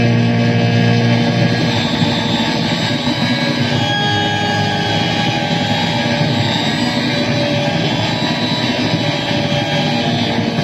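Saxophone played live through effects pedals, building a dense, steady wall of overlapping sustained tones and noise. A strong low drone drops away about a second and a half in.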